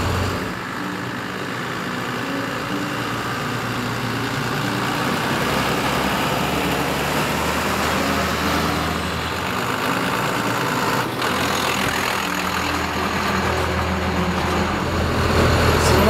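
Cummins 5.9 diesel engine of a school bus running steadily while the bus drives, the engine warmed up.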